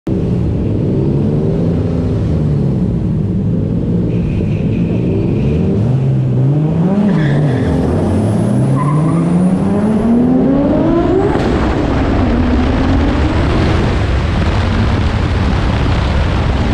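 Red Toyota Supra's engine heard from outside the car, its note rising and falling with the throttle, then climbing in one long rev from about seven seconds in to about eleven. After that a loud rushing noise takes over as the car runs at speed.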